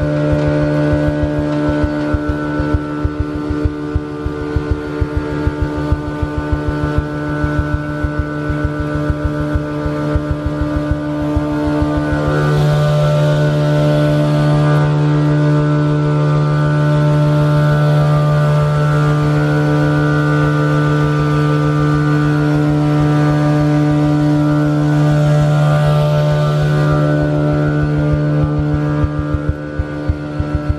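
CM3500XL insulation blowing machine running under load, its blower giving a steady hum of several pitched tones over a fast low flutter as loose-fill insulation is fed from the hopper and blown down the hose. It gets a little louder from about halfway, and a rushing hiss joins briefly in the middle and again near the end.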